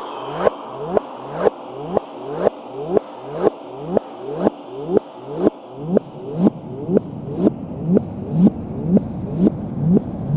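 Electronic psychill/psytrance track with a kick drum twice a second (120 BPM) under sustained synth layers. A deeper bass rumble fills in about six seconds in.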